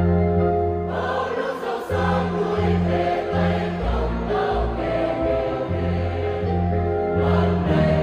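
A choir sings a Vietnamese hymn in parts in a minor key, over a sustained low bass line. The upper voices swell in about a second in.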